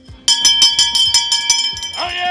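A town crier's handbell rung rapidly, about seven or eight strokes a second, starting just after a brief quiet moment. This is the crier's traditional call for attention before a proclamation.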